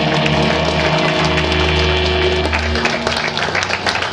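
Live rock band playing electric guitars, bass guitar and drums at full volume. The low bass drops out about three seconds in, leaving guitars and a run of short, sharp hits.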